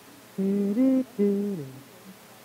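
A person humming a short phrase of three steady notes, the middle one higher, with the last sliding down at the end.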